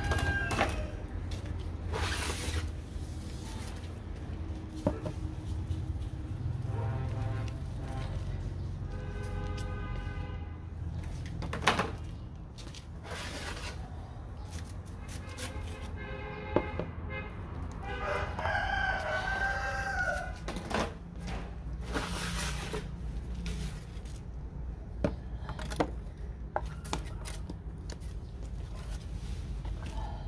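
Two long bird calls, one about eight seconds in and one about eighteen seconds in, over a low steady hum with scattered clicks.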